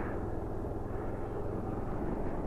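Bajaj Dominar 400's single-cylinder engine running steadily as the motorcycle cruises along, with a steady rush of road and wind noise under it.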